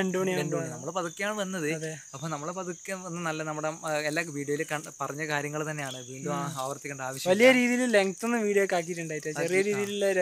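Men talking in Malayalam throughout, over a steady high-pitched drone of insects.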